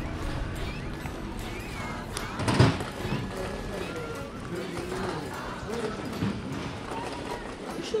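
Busy shopping-arcade ambience: people talking and music playing, with a brief loud thump about two and a half seconds in.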